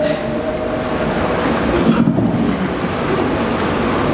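A steady, loud rushing noise with no clear pitch or rhythm fills a pause in a man's speech.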